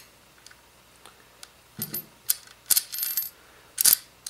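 Steel M8 washers clinking against each other and against a threaded steel rod as they are handled and slipped onto it: a few short, bright metallic clicks and jingles in the second half.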